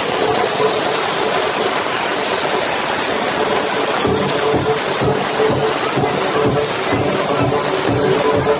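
Electronic dance music playing loud over a nightclub sound system, heard as a dense hissing wash. The kick drum is thin at first, and a steady beat comes back about halfway through.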